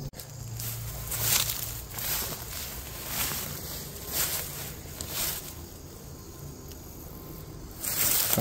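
Footsteps through long grass and undergrowth, with swishes of brushing plants roughly once a second.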